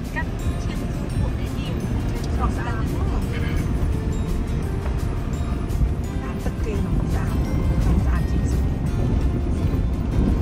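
A steady low rumble like a moving vehicle, with music and voices over it.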